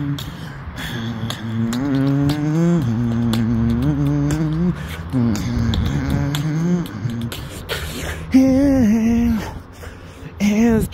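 A man's voice singing a wordless melody of held and sliding notes, with beatboxed mouth percussion clicking between them in a steady beat. There is a brief break about 7.5 seconds in, then a louder sung phrase.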